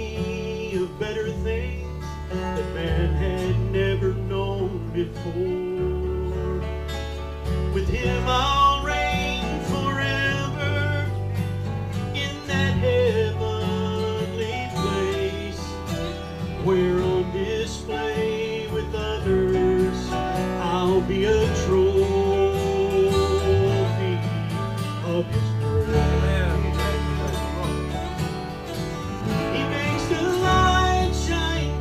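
Live country gospel band playing: a strummed acoustic guitar, an electric bass stepping between notes, and a guitar played flat with a slide bar, its notes gliding.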